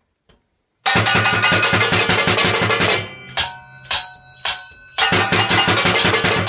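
Junk percussion kit made of metal kitchen items played with drumsticks: about a second in, a fast, dense run of strokes starts, then a few separate hits around the middle that leave a metallic ring, and the fast playing resumes near the end.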